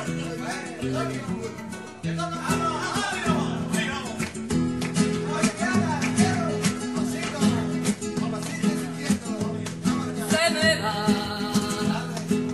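Flamenco music: acoustic guitar strumming and plucking, with a voice singing in places, strongest near the start and again near the end.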